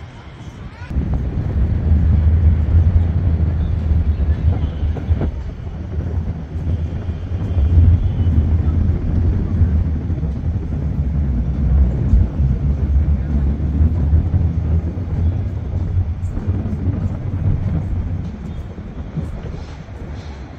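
Wind buffeting the microphone: a loud, gusting low rumble that rises about a second in and eases near the end.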